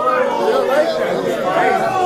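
Several men talking and calling out over one another in a crowd: loud, continuous overlapping chatter with no single clear voice.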